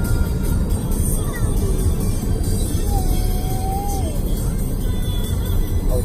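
Wind rushing over the microphone and road noise from a moving vehicle, a loud, steady rumble, with music faintly underneath.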